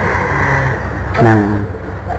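A man speaking Khmer in a Buddhist sermon, with a stretch of rushing hiss before the voice comes in about a second in.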